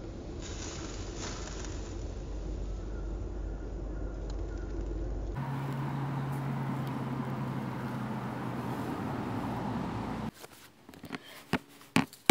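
Fine sand pouring in a steady hiss into an empty plastic tub and piling up on its floor. A low steady hum sits under it in the second half. The pouring stops about ten seconds in, and a few light knocks follow as the tub is handled.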